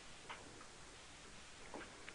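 Near silence: room tone with two faint, brief clicks, one just after the start and one near the end.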